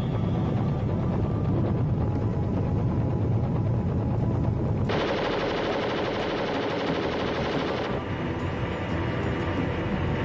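Helicopter rotor and engine noise, dense and low, that switches abruptly to a louder, harsher and brighter stretch about five seconds in and drops back about three seconds later.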